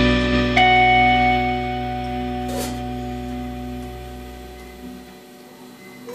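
A live blues-rock band's closing chord ringing out on electric guitar and bass at the end of a song. A fresh guitar note is struck about half a second in, then the held chord fades steadily, the bass dropping away near the end.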